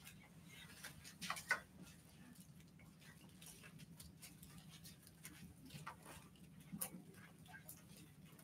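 Quiet room with faint, scattered rustles and soft clicks of Bible pages being handled, with a brief louder paper rustle just over a second in.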